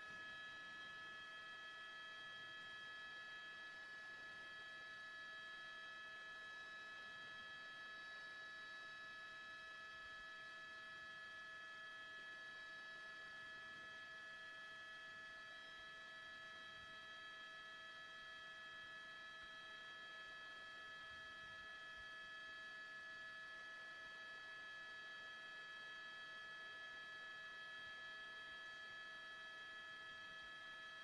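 Near silence: only a faint, steady electronic hum made of several high, unchanging tones.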